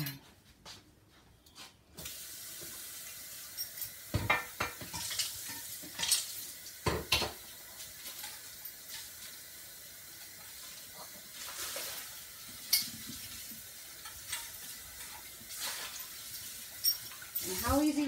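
Kitchen tap running into a sink while a loaf pan is washed by hand. The water comes on about two seconds in, and the pan knocks and clanks against the sink now and then.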